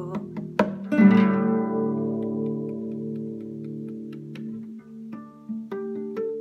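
Acoustic guitar played solo: after a sharp click, a chord is struck about a second in and left to ring and fade, and single plucked notes follow near the end.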